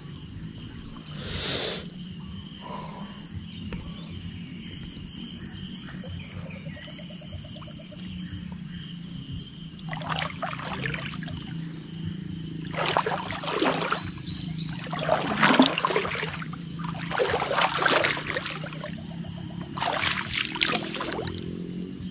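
Rustling and swishing of dense leafy marsh plants in irregular bursts as someone walks through them at the water's edge, busiest in the second half, over a steady background hum.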